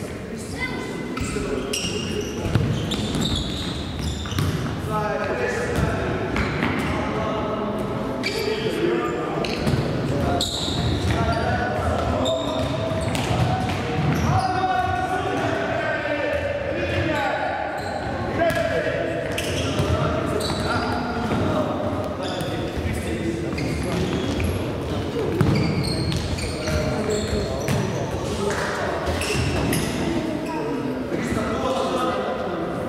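Indoor futsal play in an echoing sports hall: the ball being kicked and bouncing on the wooden floor, with children's voices shouting and calling over one another.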